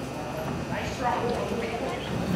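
Hoofbeats of a cutting horse moving quickly on soft arena dirt as it works a cow, with a few shouts from spectators.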